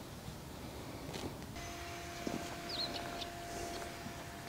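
Quiet outdoor background: a faint steady hum comes in about one and a half seconds in, with a single short high chirp near the middle and a few soft ticks.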